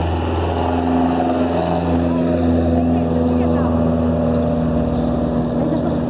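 A motor vehicle's engine idling with a steady low hum that does not change in pitch.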